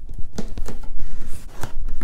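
Hands working the lid off a cardboard box: scuffing and rubbing of cardboard with a few sharp knocks.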